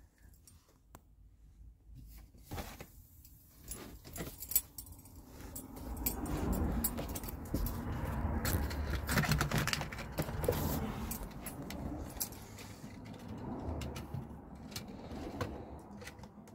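Handling and movement noise as a person climbs into a semi-truck cab: rustling of clothing and the phone, a string of sharp clicks and knocks, and metallic jingling. Faint at first, fuller and louder from about six seconds in, easing off near the end.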